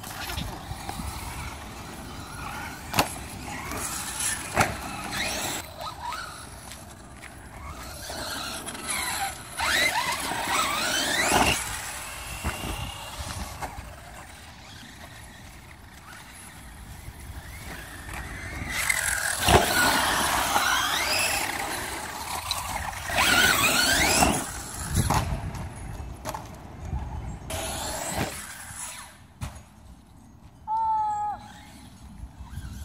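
Brushless electric RC monster trucks, a Redcat Avalanche XTE on a 4S battery among them, driven in bursts: the motor whine rises and falls several times. A few sharp knocks come through, the loudest about twenty seconds in.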